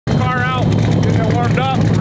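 Twin-turbo 427ci LS V8 idling with a steady, low, even hum.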